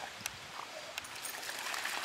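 Water splashing and sloshing as dogs wade and swim through shallow lake water, with a few short, sharper splashes.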